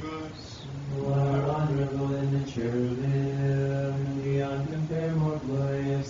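Orthodox monks chanting a Vespers hymn: men's voices holding long, steady notes that step to a new pitch every second or so.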